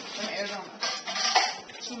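Cutlery and plates clinking at a dinner table, with two sharper clinks around the middle, under low table talk.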